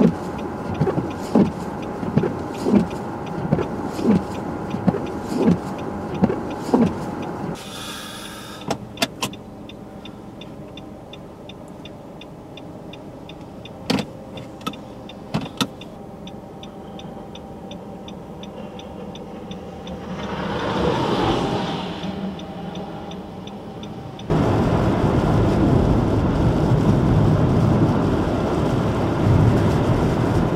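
Sounds from inside a vehicle driving in a snowstorm. For the first several seconds the windshield wipers sweep with a regular thump on each stroke. After a quieter stretch with a steady light ticking, loud road and wind noise sets in suddenly about 24 seconds in.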